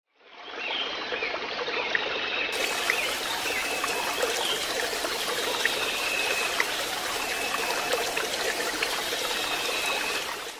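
A steady sound of running, trickling water that fades in just after the start.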